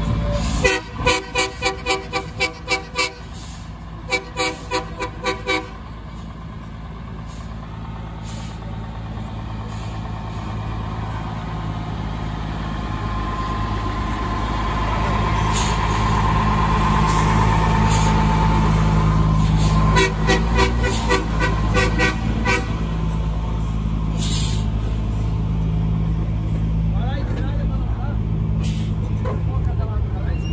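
Truck horns sounding in rapid runs of short toots, about four a second, three times, over a diesel truck engine running steadily. The engine grows louder in the middle.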